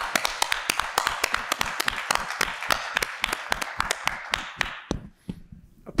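Applause: many people clapping, with sharp, louder claps close to the microphone. It dies away about five seconds in.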